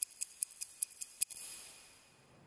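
Ticking of a watch, fast and even at about five ticks a second. It stops about a second in with one sharper click, followed by a high whoosh that fades away.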